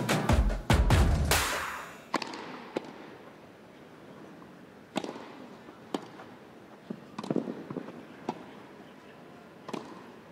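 Intro music with a steady beat that ends about a second and a half in, followed by a tennis rally: a ball struck by rackets, a single sharp crack roughly every second, over a faint crowd hush.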